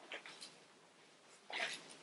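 Pages of a Bible being leafed through by hand: soft papery rustles, a few small ones near the start and a louder one about a second and a half in.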